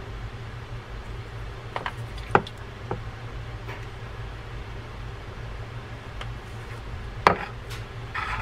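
Small objects handled on a wooden workbench during a fishing-reel service: a few sharp light clicks and knocks, the loudest about two and a half seconds in and again near the end, over a steady low hum.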